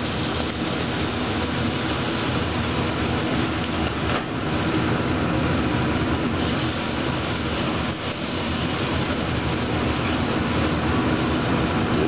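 Frozen Cajun trinity (chopped onion, celery and bell pepper) hitting a pot of hot butter-and-flour roux and being stirred, sizzling steadily. The cold vegetables cut the heat in the pan and stop the roux from browning further.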